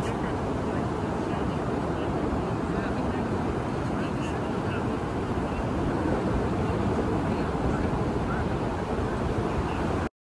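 Ocean surf breaking on a beach with wind on the microphone: a steady rushing noise that grows a little louder about six seconds in.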